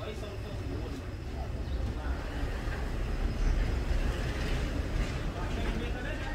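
Steady low rumble of street traffic, swelling about halfway through as a vehicle goes by, with faint voices in the background.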